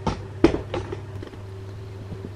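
CNC stepper motor slowly turning the ball screw on a very slow feed-rate move, a steady low hum with a fainter steady higher tone over it. A few short, sharp sounds come in the first second.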